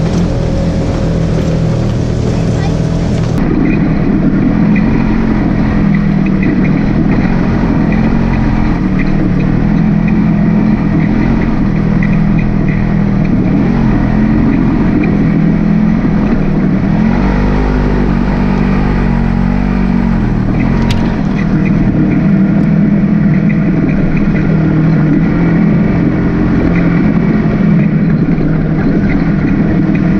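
Polaris RZR side-by-side engine running under way on a rough trail, recorded from on board, with a short change in engine pitch about two-thirds of the way through.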